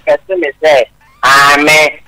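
A person's voice: a few short syllables, a brief pause, then one long drawn-out vocal sound, an exclamation or laugh-like cry rather than plain words.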